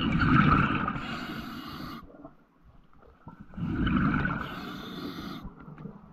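A diver breathing underwater, two long noisy breaths about a second and a half apart, each with bubbling and rushing hiss.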